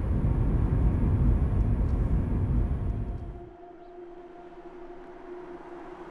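Steady road and engine noise inside a moving car's cabin, a loud low rumble with hiss. It fades out and drops away sharply about three and a half seconds in, leaving a much quieter steady hum of two held tones.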